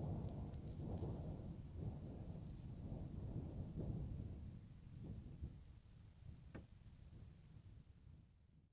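Faint, uneven low rumble on the microphone that fades in the last few seconds, with one faint tick near the end.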